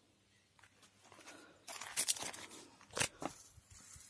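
Irregular rustling and scraping, with sharp clicks about two and three seconds in, as a hand-held camera is moved over a dishwasher.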